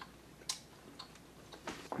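Faint, wet mouth clicks of people chewing soft licorice candy, a few scattered clicks with the sharpest about half a second in.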